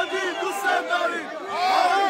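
A dense crowd of men shouting and cheering at close range, with many overlapping voices that surge louder at the start and again about a second and a half in.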